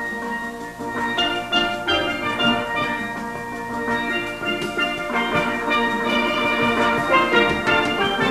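A full steel orchestra playing a calypso arrangement: many steelpans struck in quick runs of bright ringing notes over a driving percussion rhythm.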